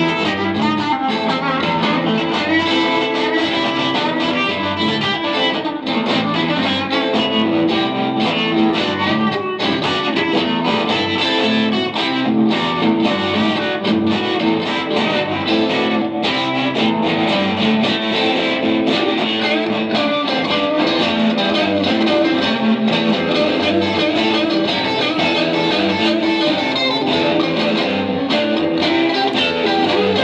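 Two guitars, one of them a hollow-body electric, playing an instrumental duet live, their picked lines weaving over each other without a break.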